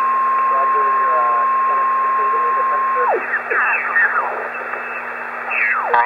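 Homebrew HF receiver's speaker playing band hiss with a steady heterodyne whistle. About three seconds in the whistle slides down in pitch and drops away as the tuning dial is turned across the 20-metre band in upper sideband. Garbled sideband voices then sweep past, falling in pitch, as stations pass through the passband.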